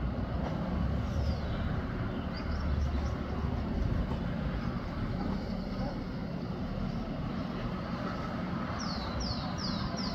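A steady low rumble of background noise, with a couple of faint, high, falling bird whistles early on. About a second before the end, a bird starts a quick run of high, falling chirps, about three a second.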